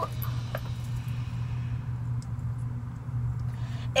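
Steady low background hum, with a few faint clicks and light rustling as a small wrapped ornament is handled and opened.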